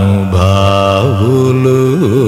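Male Carnatic classical vocalist singing long held notes, with a wavering pitch ornament about a second in, over a steady low drone.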